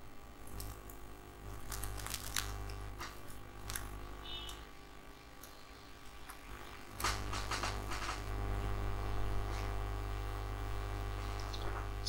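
Faint, scattered clicks of a computer keyboard and mouse over a low, steady hum that gets louder about seven seconds in.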